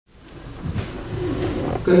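Sound fading in from silence: a low rumble of room sound and a man's voice at a microphone. His speech comes through clearly near the end.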